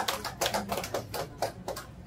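Applause from a small congregation dying away: the clapping thins out into a few scattered, fading claps.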